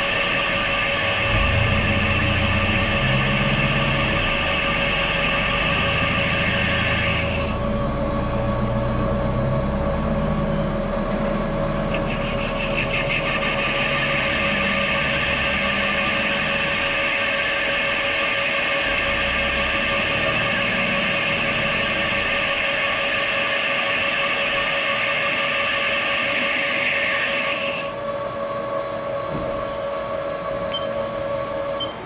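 Haas TL-2 CNC lathe spindle turning an unbalanced hydraulic swivel part at about 300 rpm, with a steady machine whine and a low rumble. A higher-pitched cutting sound from the boring tool drops out about seven seconds in, returns a few seconds later, and stops again near the end, as the tool takes passes on the bore.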